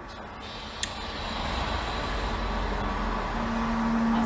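A road vehicle passing outside, a rushing rumble that grows steadily louder, with a single sharp click about a second in.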